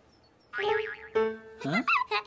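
A springy cartoon boing sound effect with a wobbling pitch about half a second in, followed by a short held musical note. A brief questioning "ah?" comes near the end.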